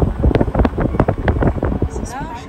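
Wind buffeting a phone's microphone from a moving car, a heavy rumble with irregular knocks.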